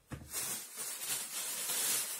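Thin plastic garbage bag being shaken open and handled, a steady rustle that grows a little louder near the end.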